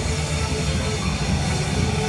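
Live rock band holding a loud, steady, distorted drone of electric guitars and keyboard, a dense rumble without a clear beat.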